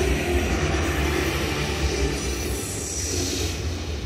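Stadium PA system in a domed ballpark playing a loud, rumbling intro sound effect with held tones, and a falling whoosh in the second half; it dips briefly near the end.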